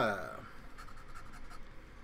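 The coating of a scratch-off lottery ticket being scratched off in short, faint, irregular scraping strokes.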